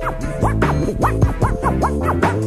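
Turntable scratching on a vinyl record over a hip-hop beat: quick back-and-forth pitch sweeps, about four or five a second, over a steady bass.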